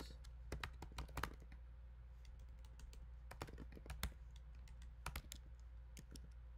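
Typing on a computer keyboard: irregular runs of key clicks, with a short pause near the middle of the burst of typing. A steady low hum sits underneath.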